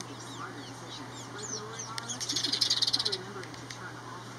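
House sparrows chirping, then a loud, harsh, rapid chatter lasting about a second from about halfway through.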